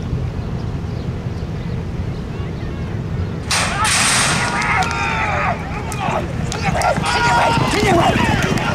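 Metal starting gate banging open about three and a half seconds in, followed by shouting voices as the racehorses break from the gate.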